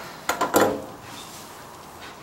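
A utensil clinks against a metal pan a few times in the first second as pasta is tossed. A faint, steady sizzle follows from the hot pan as egg cooks onto the pasta.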